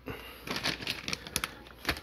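Plastic bags of pitas and tortillas crinkling as they are handled: a quick run of irregular crackles and clicks.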